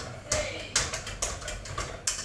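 A cooking utensil clicking and tapping against a frying pan as food is stirred, about five sharp knocks spread unevenly across two seconds.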